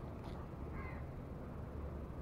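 A single short bird call about a second in, over a steady low rumble.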